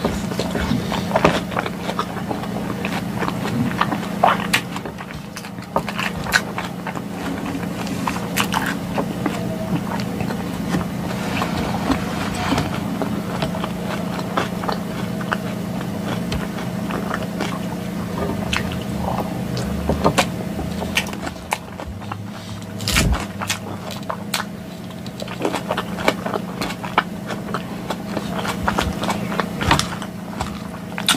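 Close-miked chewing and crunching of a green lettuce salad with cheese and cherry tomatoes, with irregular crisp crunches and a fork clinking and scraping in a glass bowl now and then. A steady low hum runs underneath.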